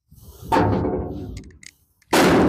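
Steel trailer fender being forced with a pickaxe, giving a loud metallic bang about half a second in that rings and fades over about a second. Another bang starts right at the end.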